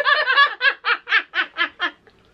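Young women laughing, breaking into a run of quick, even laugh pulses, about four a second, that stops just before the end.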